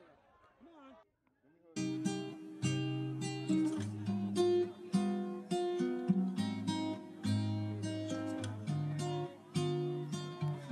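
Acoustic guitar music, plucked and strummed, coming in about two seconds in after a moment of near silence.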